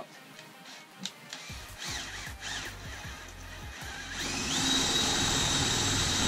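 Cordless drill boring a counterbore into a wooden batten with a 13 mm spade bit. The motor runs up about four seconds in and holds a loud, steady high whine as the bit cuts into the wood.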